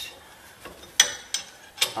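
A few sharp clicks and taps of a hand on a steel caliper mount tack welded to the spindle. The loudest comes about a second in, followed by two lighter ones.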